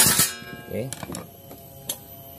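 Soft background guitar music. It opens with the tail of a loud scrape as the Suzuki Nex scooter's CVT cover is pulled free, and one sharp click comes near the end.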